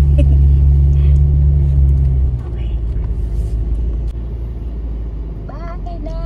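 Car engine idling, heard from inside the cabin, then cut off sharply about two seconds in, leaving a low rumble.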